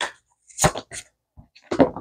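Tarot cards being handled as a card is drawn: about five short, sharp taps and knocks, the loudest about two thirds of a second in and near the end.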